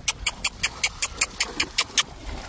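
Rapid, evenly spaced tongue clicks, about five a second, made by the rider to urge the horses on.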